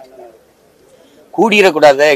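A man speaking Tamil into press microphones: his voice trails off, pauses for about a second, then comes back loud about one and a half seconds in.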